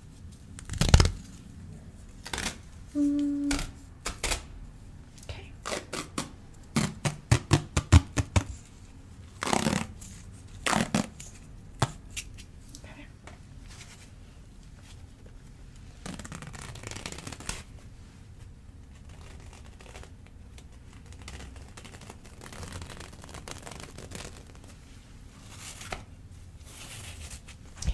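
Elastic ace bandage being handled and unrolled, the fabric rustling and crackling: a quick run of small sharp clicks and crackles in the first half, then a longer rustle a little past the middle.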